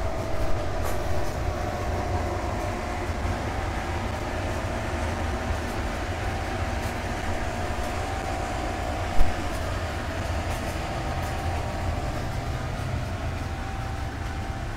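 A steady mechanical rumble with a faint, even hum above it, and a single knock about nine seconds in.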